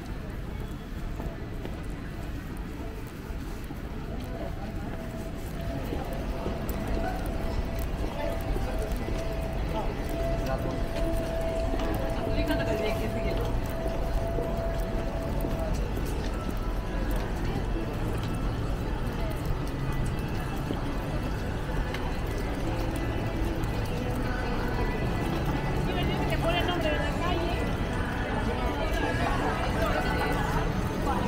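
Busy rainy city street ambience: footsteps on wet pavement, indistinct voices of passers-by, and music playing, with a single held tone from about five to fifteen seconds in.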